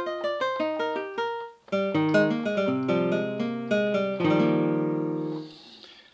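The Roland Zenbeats ZEN-Core 'Nylon Gtr 1' preset, a nylon-string acoustic guitar sound, playing a phrase. A quick run of plucked single notes breaks off briefly a little before two seconds in. More picked notes follow, then a chord about four seconds in rings out and fades away near the end.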